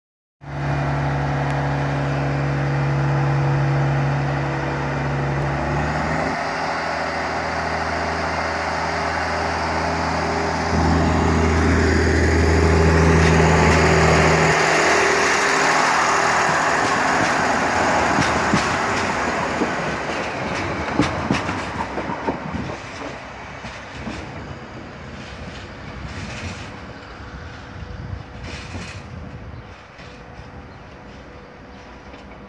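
A Slovenian Railways class 713/714 diesel multiple unit passing close by. Its diesel engine runs loud, and its pitch shifts twice in the first half. Then the engine note drops away and the wheels click over rail joints as the train moves off and fades.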